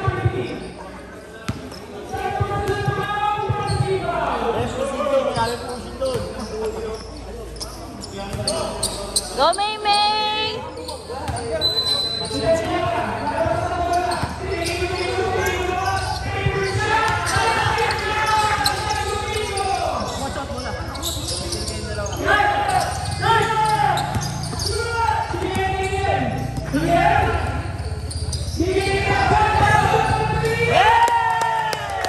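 Basketball bouncing on a concrete court during play, with players and onlookers shouting and talking over it.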